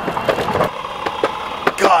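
Boosted electric skateboard rolling on a concrete sidewalk, its wheels and belt drive making a rough, clicking racket. One drive belt is not tight enough after a belt change.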